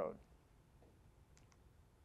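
Quiet room tone after the end of a spoken word, with two faint, sharp clicks in quick succession about a second and a half in.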